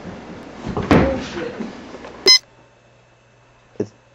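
Rustling handheld-camera noise with a brief voice sound about a second in, cut off by a sharp click just past halfway. After the click, a quiet room with a faint steady electrical hum and one short knock near the end.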